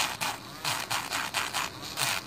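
Electric nail drill with a gold barrel bit grinding gel polish off a thumbnail, a faint steady motor tone under quick rasping strokes, about five a second, as the bit is worked back and forth across the nail.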